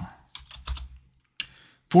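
Computer keyboard being typed on: a handful of separate key clicks over about a second and a half as a short terminal command is entered.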